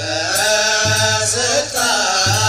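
Ethiopian Orthodox liturgical chant (mahlet) sung by voices, with a low beat recurring about every second and a half.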